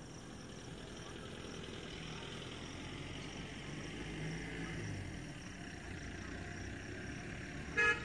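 Faint outdoor background: a steady high insect buzz under a distant low engine-like hum that swells a little in the middle and fades again.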